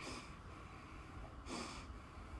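A person breathing audibly through the nose: two short exhales about a second and a half apart.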